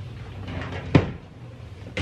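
A single sharp knock about a second in, a short hard bump.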